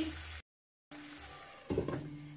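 Onions and tomatoes sizzling in a pan as they are stirred with a wooden spoon, cut off after about half a second by a brief gap of silence. Near the end comes a short clatter as a pan lid is handled.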